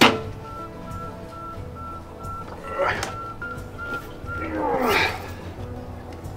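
A folding metal camp table being handled and set up: a sharp clack at the very start, another knock about three seconds in, and a longer sliding, scraping sound near five seconds as the legs are opened out. Background music with a steady high note runs underneath.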